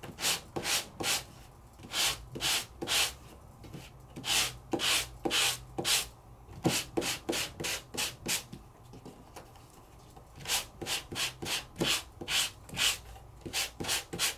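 Sanding block rubbed by hand over a die-cut piece of sandable cardstock, in quick back-and-forth strokes about two or three a second. The strokes come in three runs with short pauses between. The sanding scuffs the high points of the paper to give it a distressed look.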